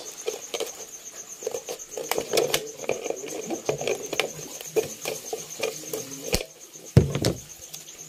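Scissors cutting through a thin plastic Coke bottle: an irregular run of snips and crackles of the plastic, with a louder bump about seven seconds in as the cut bottle is handled.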